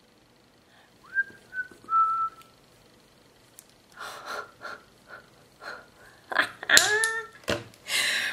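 A person whistling three short notes about a second in, then breathy noises and a short wordless vocal sound near the end.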